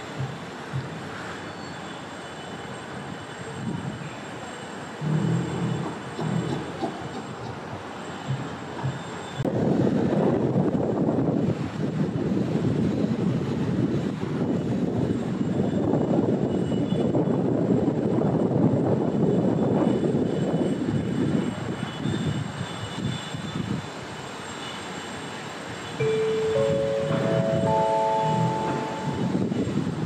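A steady rumble of a passing vehicle, much like a train going by, swells up about ten seconds in and holds for about twelve seconds before fading. Near the end comes a four-note chime, its tones stepping upward in pitch.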